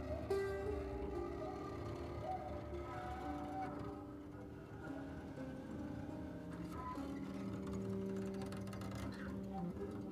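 Quiet improvised jazz from a small band: grand piano playing scattered notes and chords over upright bass, with several tones held for many seconds.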